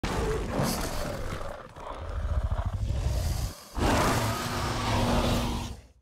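Movie sound-effect roars of a Gorgosaurus, a tyrannosaur: two long, rough roars with a deep rumble beneath, split by a brief break a little past halfway.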